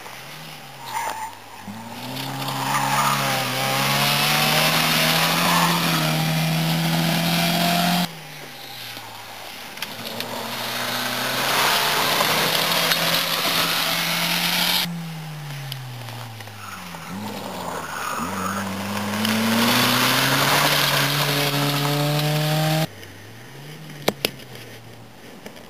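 Rally cars passing one after another on a gravel stage, each engine revving hard and climbing in pitch through the gears, with tyre and gravel noise over it; one of them is a Mk2 Volkswagen Golf. The sound changes abruptly three times as one car's pass is cut to the next.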